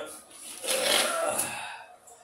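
Plastic wrapping crackling and cardboard scraping as a large RC car is pulled up out of its box, a dense rustle that starts about half a second in and dies away near the end.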